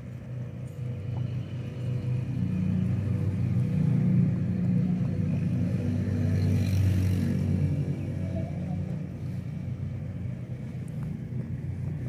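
Low, steady engine rumble that grows louder for a few seconds in the middle and then eases off.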